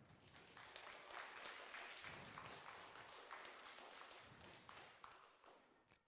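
Faint audience applause, many hands clapping, swelling in the first second and dying away near the end.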